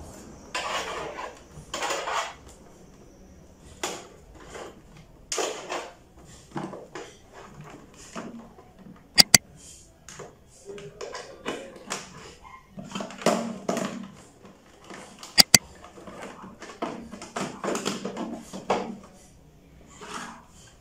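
Hands handling a small digital TV decoder box, its antenna cable and remote controls on a TV stand: rustling and light knocks, with two sharp double clicks, one about halfway through and one later.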